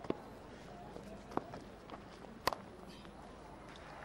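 Quiet cricket-ground ambience with a few brief sharp clicks, one of them the bat striking the ball as it is cut away past gully; the loudest click comes about two and a half seconds in.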